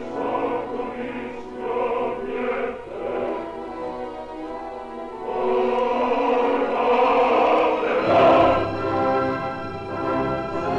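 Operatic orchestra and choir performing, from an old mono LP recording. The music pulses at first, then swells louder from about halfway through.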